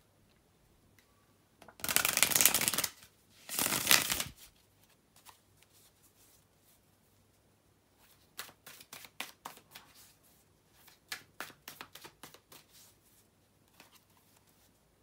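A deck of tarot cards being shuffled by hand: two loud riffling bursts of about a second each, around two and four seconds in, then a run of quick, irregular clicks of the cards in the second half.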